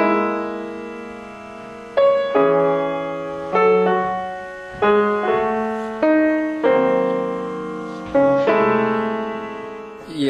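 Solo acoustic piano played slowly: about nine sparse chords struck one after another, each left to ring and fade before the next.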